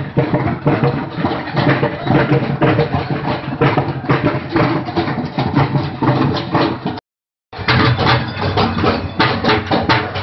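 Frame drums beaten in a fast, dense rhythm for Muharram. The sound drops out for about half a second around seven seconds in.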